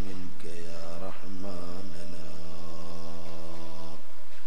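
A man chanting a religious recitation in drawn-out, melodic notes. The last note is held steady for about two seconds and cuts off suddenly at the end.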